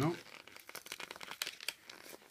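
Fingers picking at and peeling the sealed packaging of a trading-card blister pack, giving a run of small crinkling and tearing crackles. The seal is stubborn, the toughest thing to open up.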